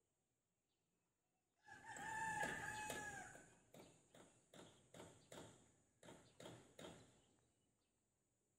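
A rooster crowing once, faint, followed by a run of about seven short sharp knocks roughly every half second.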